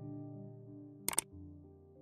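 Soft, slow background music, piano-like held chords, fading out. A sharp double click cuts in about halfway through.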